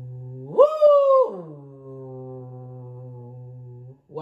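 A woman's voice singing a sustained low 'ooh' that swoops sharply up to a high pitch about half a second in and drops straight back down, then holds low again: a vocal warm-up slide tracing a spike-shaped melodic contour.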